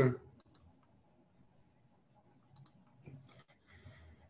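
A few faint clicks over quiet room tone: a pair about half a second in, another pair past two and a half seconds, and soft faint noises near the end.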